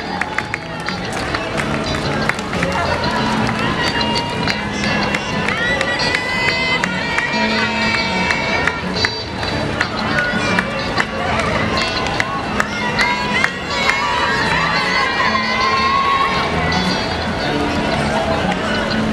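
Footsteps of many runners on a paved road, mixed with spectators' voices and music with a stepping bass line.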